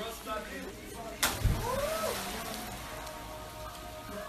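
Water splashing in a swimming pool: a sudden hit about a second in, then a hiss of spray fading over about a second. A voice calls out during the splash, with faint music in the background.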